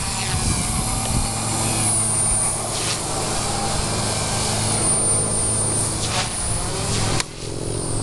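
Walkera 4F200 RC helicopter with a Turbo Ace 352 motor on an 18-tooth pinion, climbing at full throttle in a full-stick punch-out. The main rotor gives a steady hum under a high motor whine, and the sound eases off about seven seconds in.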